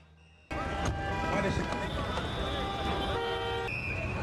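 Busy city street traffic with several car horns honking in long held tones over crowd voices, cutting in suddenly about half a second in after a brief silence.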